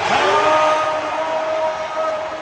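Basketball arena's game horn sounding one steady note for about two seconds, over crowd noise.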